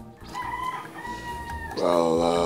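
A rooster crowing once, one long held call lasting about a second and a half.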